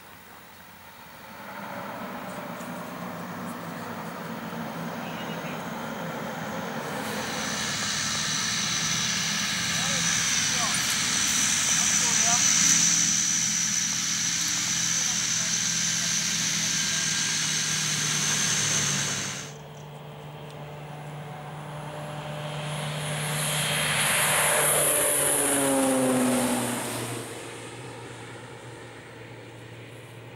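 Cessna 208 Caravan's PT6A turboprop engine running on the ground, with a steady drone and a high turbine whine that cuts off abruptly about two-thirds through. Then the aircraft flies past, its pitch falling as it goes by, and fades away.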